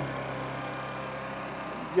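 Electric drive motors of the WEEDINATOR autonomous tractor running steadily as it drives forward: an even hum with several faint steady tones.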